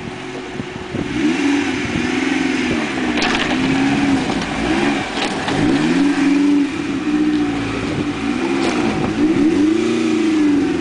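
Suzuki SJ 4x4's engine revving up and down over and over as the truck crawls down a steep bank into a stream. A few sharp knocks break in along the way.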